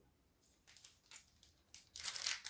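Near silence, with a few faint, brief crinkles from a foil Pokémon booster pack being picked up.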